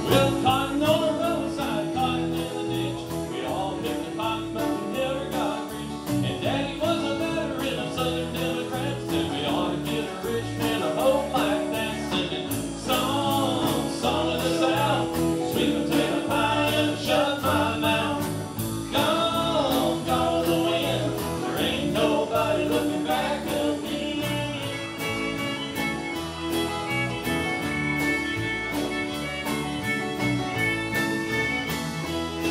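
A live traditional country band: male voice singing over acoustic guitars, bass, keyboard and drums keeping a steady beat. About three-quarters of the way through the singing stops and the instruments carry on.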